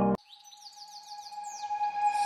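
Background music cuts off just after the start. Then come quick series of descending bird-like chirps over a faint held tone that grows louder as the next music track fades in.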